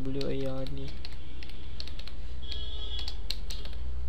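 Computer keyboard being typed on: a run of irregular key clicks over a steady low hum.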